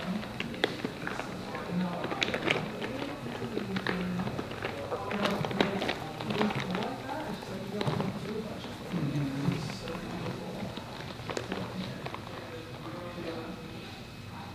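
Clear flexible plastic underwater camera housing being handled and rolled over a camera, giving many small crinkles, rustles and taps.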